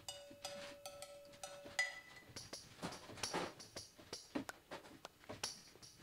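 Faint playback of sampled drum-kit percussion (Kontakt 7 Studio Drums) with most mixer channels muted: a held ringing note stops about two seconds in, then light scattered hits follow.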